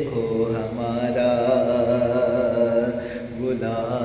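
A man singing a naat unaccompanied, drawing out long, slightly wavering held notes, with a short break about three seconds in before the next phrase begins.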